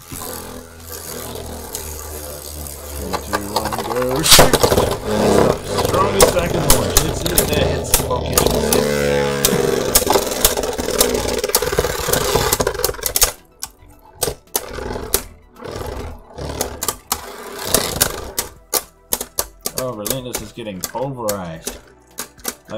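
Two Beyblade Burst spinning tops whirring in a plastic stadium and clashing, with repeated sharp clicks as they hit each other and the stadium walls, and one loud strike about four seconds in. The collisions thin out to scattered clicks in the second half.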